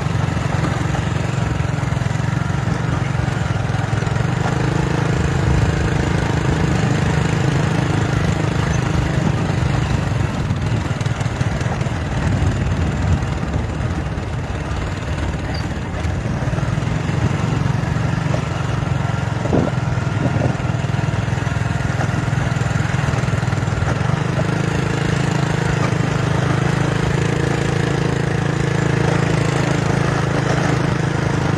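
Small motorcycle engine running steadily on a dirt road, easing off briefly about halfway through. There are a couple of short knocks about two-thirds of the way in.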